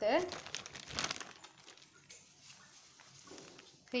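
Thin plastic sheet crinkling as it is handled and spread out flat. The crinkling is loudest in the first second, then dies down to faint rustling.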